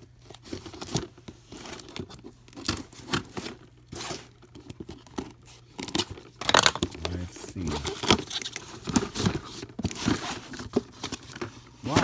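Box cutter slicing through packing tape on a corrugated cardboard case, then the cardboard flaps being pulled open, in a run of irregular rasping tears, crackles and knocks.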